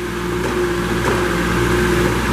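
Cat engine of a Princeton PBX piggyback forklift running steadily under hydraulic load as the mast is driven in and out along its reach, with a steady whine over the engine note.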